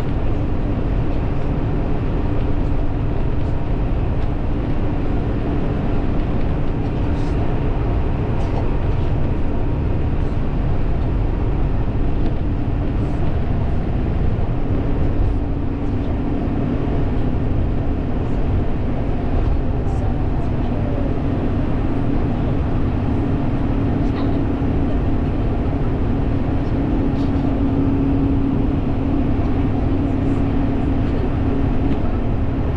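Road and engine noise of a car at cruising speed, heard from inside: a steady rush of tyre noise with a low hum that grows stronger about halfway through.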